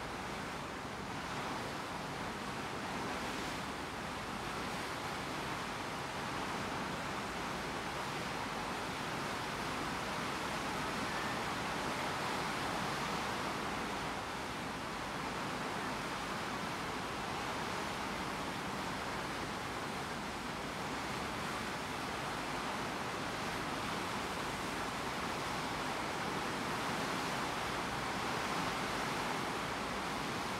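Steady rush of wind and sea water past a passenger ship under way, an even hiss with no breaks.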